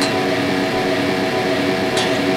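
Electric guitar played through dozens of stacked digital delays, the repeats piling up into a dense, steady drone with few separate note attacks.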